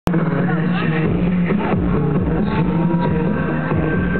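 Live band music with a male singer singing into a microphone over repeated drum hits, with a muffled, dull sound.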